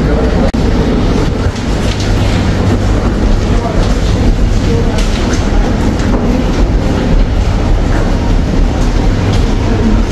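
Passengers walking through an enclosed boarding gangway: a loud, steady low rumble with footsteps and wheeled bags clattering on the walkway floor, and faint voices.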